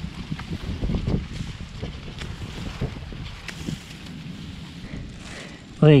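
Low, irregular rumble of wind buffeting the microphone, with a few faint rustles and ticks from dry sweet potato vines and soil being handled.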